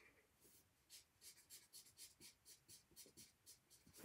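Faint felt-tip marker strokes on sketchbook paper: a quick run of short scratchy strokes, about four or five a second, as broom bristles are drawn.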